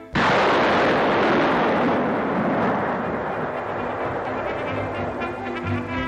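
A large demolition explosion of stacked obsolete ammunition, detonated electrically: a sudden blast that becomes a long rumble and fades slowly over several seconds. Brass music comes in faintly under it in the second half.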